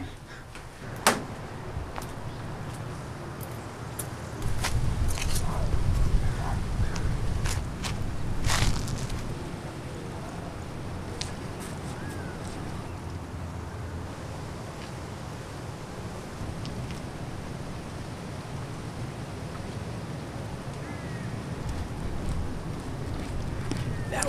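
Low outdoor rumble that swells for several seconds and then settles into a steady background, with a sharp knock about a second in and a few faint footsteps or clicks.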